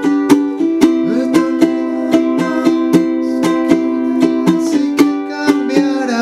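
Acoustic ukulele strummed in a steady down-down-up-up-down-up pattern, about four strokes a second, with the chord changing twice.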